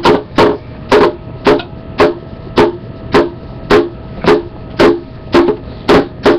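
A steady beat of single percussion hits, about two a second, each sharp and followed by a short pitched ring. A faint held tone sounds between the hits.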